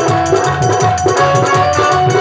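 Instrumental folk music: a dholak plays a fast, steady beat under held electronic keyboard notes, with rattling percussion keeping time on top.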